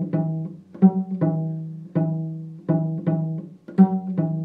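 Cello played pizzicato: about seven plucked notes in a steady rhythm, each starting sharply and ringing down before the next.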